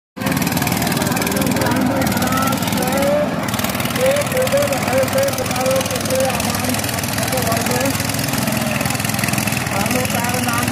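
Power tiller's single-cylinder diesel engine running hard under load as it ploughs through deep mud, steady and loud. Voices shout over it.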